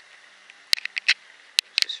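A handful of sharp, short clicks close to the microphone over a quiet background: a quick cluster of three or four a little past a third of the way in, then a few more near the end.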